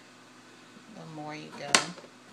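Low kitchen room noise, then a short bit of voice, then one sharp knock near the end as produce is handled and cut on the kitchen counter.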